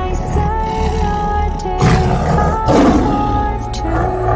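A lion roaring, in two rough surges about halfway through, over background music of long held tones.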